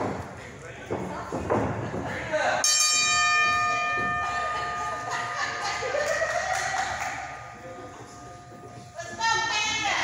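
Wrestling ring bell struck once about three seconds in, ringing out and fading over several seconds, the signal that the match begins. Voices and shouts from the small crowd come before it and over it.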